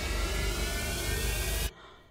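A dramatic rushing, rumbling sound effect that holds steady and then cuts off suddenly near the end.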